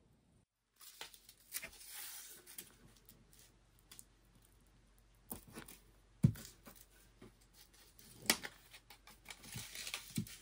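Velcro strips being peeled, handled and pressed onto a plastered wall above a window frame: hissing peels of the fastener or its adhesive backing near the start and end, with scattered clicks and rubs of hands on the wall. One sharp knock about six seconds in is the loudest sound.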